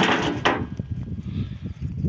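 Stones knocking and thudding as they are handled and dropped: a sharp knock at the start, another about half a second in, then a run of duller, irregular knocks.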